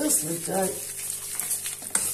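Hot water poured from a kettle onto dry bulgur in a plastic tub, a steady hissing pour, while a spoon stirs and scrapes through the grains to soak them.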